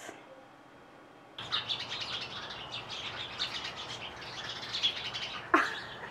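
Many small birds chirping busily in a tree, starting abruptly about a second and a half in after a quiet stretch. A short, louder sound comes near the end.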